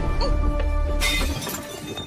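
Glass shattering about a second in, over tense film-score music whose low drone drops away just after the crash.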